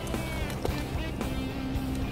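Background music, with a held note in the second half.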